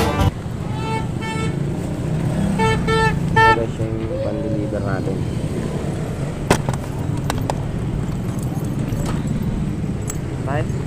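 Vehicle horn sounding in short toots: two quick beeps about a second in, then three more around three seconds in, over a steady low rumble of street traffic.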